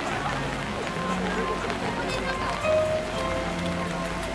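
Rain falling on umbrellas and wet ground with indistinct chatter from a crowd of visitors. Music with long held notes plays in the background.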